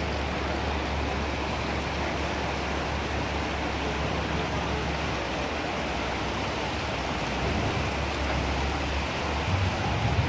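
Fast-flowing floodwater rushing steadily across a road and spilling over its edge, with a low hum underneath.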